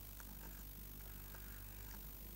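Faint steady electrical hum with a few faint, light taps and a brief scratch of a stylus writing on a tablet PC screen.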